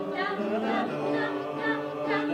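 Mixed choir of men's and women's voices singing in parts, holding sustained chords that move to new notes a few times.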